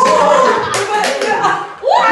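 A small group cheering and laughing, with a run of hand claps in the middle.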